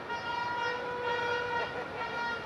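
Toy party horns blown in a crowd for New Year: several long, steady horn notes at different pitches overlap, one lower note sounding through the middle, with crowd voices underneath.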